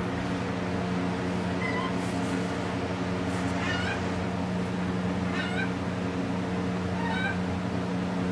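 Chickens giving short, whining calls: a faint one, then three clearer ones about a second and a half apart in the second half, over a steady low hum.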